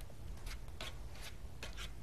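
Faint scattered rustling and a few light clicks over a low room hum: chicken strips being pressed and turned in crushed potato chips with tongs.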